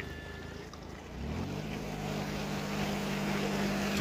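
Outboard motor on a jon boat running, its pitch climbing about a second in and then holding steady.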